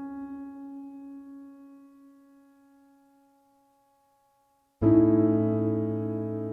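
Background piano music: one held note fades away over about three seconds, then after a short silence a loud chord is struck near the end and rings on.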